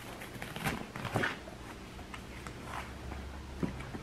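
Stretchy fabric saddle cover rustling as it is pulled off a saddle, in a few soft swishes.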